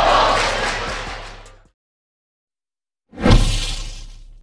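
Background music fades out over the first second and a half, followed by silence. About three seconds in, a whoosh-and-hit sound effect strikes sharply and dies away.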